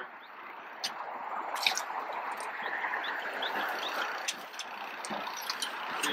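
Water sloshing and lapping against the side of the boat, a steady noisy wash that swells in the middle, with a few small clicks.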